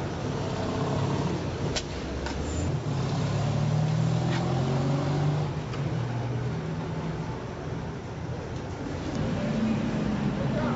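A motor vehicle engine running nearby: a steady low hum that swells and eases, with a few sharp clicks in the first half.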